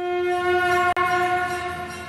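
A loud, held horn-like note at a single pitch in the bulletin's opening theme music, with a momentary cut about a second in before it fades.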